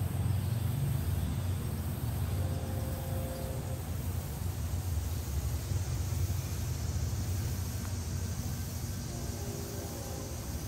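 Low, steady outdoor background rumble that slowly fades through the pause, with no distinct events.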